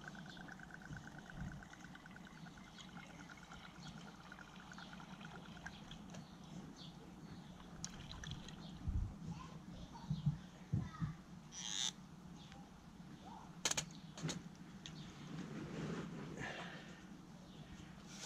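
Liquid fuel being poured from a squeeze bottle into a camping spirit burner: a faint trickle, with a few light clicks and knocks from the bottle and burner being handled.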